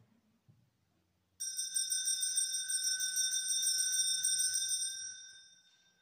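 Altar bells shaken in a rapid jingling ring, rung to mark the elevation at Mass. The ringing starts sharply about a second and a half in and fades away near the end.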